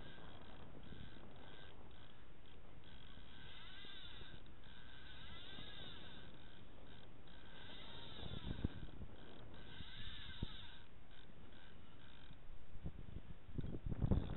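Wind buffeting a small camera's microphone: a steady low rumble, with a few handling bumps in the second half.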